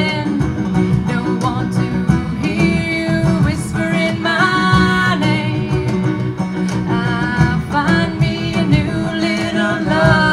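Live bluegrass band music: a woman singing held, wavering notes over fingerpicked banjo and other plucked strings.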